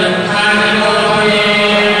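Hindu priests chanting Vedic mantras in a continuous, level-pitched recitation.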